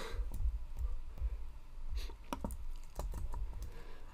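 Scattered light clicks and key taps on a computer keyboard and mouse, irregular and about a dozen in all, as text is copied and pasted into a text box.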